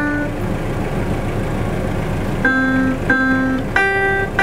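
Single synthesized piano notes from a laptop's Scratch Piano program, each set off by a finger touching a banana wired to a Makey Makey board. One note sounds at the start, then after a pause of about two seconds three more follow about half a second apart, the last one higher.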